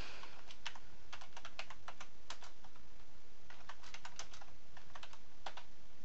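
Computer keyboard being typed on: a quick run of keystrokes, a pause, a second short run, then a single key press near the end as the command is entered.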